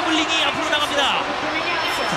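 Speech: a TV sports commentator talking over the race.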